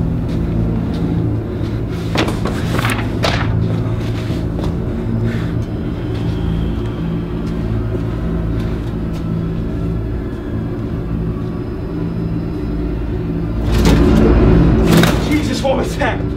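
Film soundtrack: a low, steady droning rumble with music and muffled voice-like sounds, swelling loudest about fourteen seconds in.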